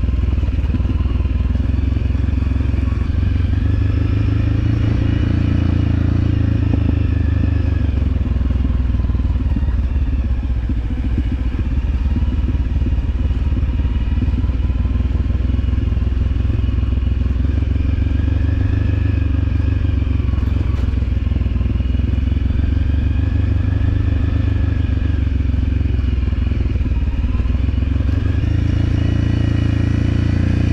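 Motorcycle engine running steadily on the move, its note rising and falling gently with the throttle.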